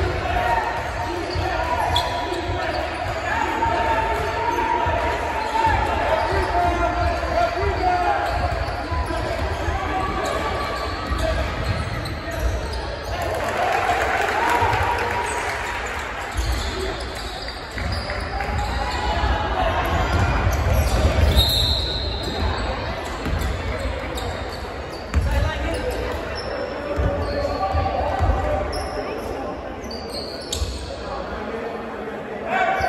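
A basketball bouncing on a gym's hardwood floor during play, repeated thuds, with spectators' voices throughout.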